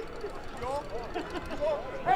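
Sports broadcast commentators laughing.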